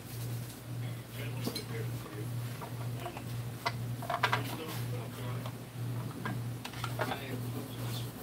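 Small clicks and cracks of hard white plastic model parts being handled and snapped apart, heard as scattered sharp ticks with a cluster about four seconds in, over a steady low hum.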